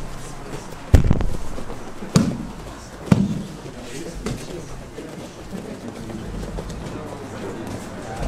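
Thuds of bodies and bare feet landing on grappling mats during jiu-jitsu drilling: three sharp ones about a second apart in the first few seconds, then a lighter one, over a murmur of voices.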